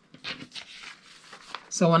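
Soft rustling and scraping of a sheet of paper being slid across a cutting mat and fed between the rollers of a paper crimper.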